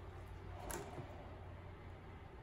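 Faint handling noise from a plastic measuring cup of mixed epoxy resin in a gloved hand, as it is lifted and tipped to pour: a soft rustle just under a second in and a small tick about a second in, over a low steady hum.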